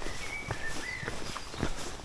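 Footsteps on a gravel platform, about two steps a second, with a thin high whistling note heard through the first half.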